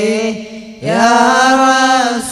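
Devotional Islamic chanting of salawat (blessings on the Prophet): a voice holds a long note, drops away briefly just before a second in, then slides up into a new note and holds it.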